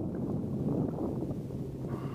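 Wind buffeting the camera microphone: a steady low rumble, with a faint steady hum joining about halfway through.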